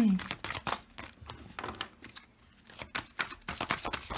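Tarot cards being shuffled by hand, with quick clicks and slides of card against card. The clicks thin out about halfway through and pick up again near the end. A throat clear right at the start.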